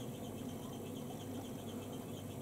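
Faint, soft brushing of an eyeshadow blending brush worked over the eyelid, over a low steady hum.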